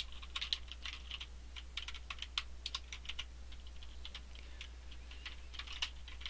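Typing on a computer keyboard: quick, irregular keystrokes, thick for the first few seconds, thinning out, then a quick few again near the end.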